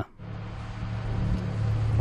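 Steady low hum with an even hiss of background noise, after a brief dip at the very start.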